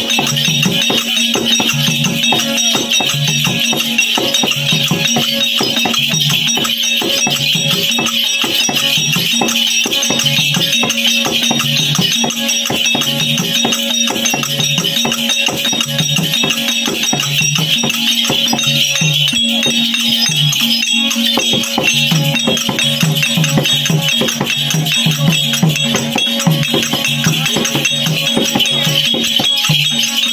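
Therukoothu accompaniment music: a steady held drone, a regular low drum beat, and a continuous bright jingle of bells or small cymbals over it.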